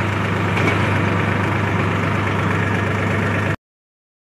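Sonalika DI-47 RX tractor's diesel engine idling steadily. It cuts off abruptly about three and a half seconds in.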